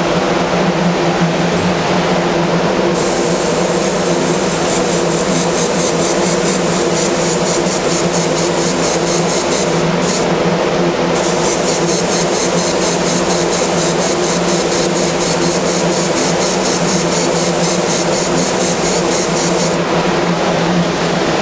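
Air spray gun hissing as Cerakote is sprayed onto a stencilled stainless steel tumbler, in two long passes with a short break about halfway through. Under it, the steady hum of the spray booth's exhaust fan.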